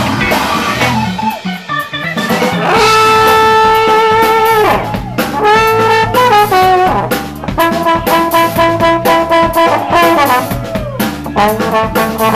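Live rock band playing, with a brass lead holding long notes over guitar, bass and drums. The lead holds one long note a few seconds in, then plays a run of shorter notes and another long held note.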